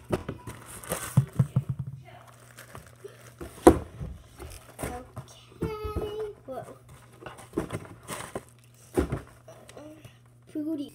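Squishy toys and their packaging being handled and put away: rustling, crinkling plastic and a run of short knocks, the loudest about three and a half seconds in and another near the end.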